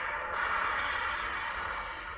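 Film soundtrack audio played through a smartphone's small speaker: a dense, steady rushing noise with faint held tones in it, fading out just after the end.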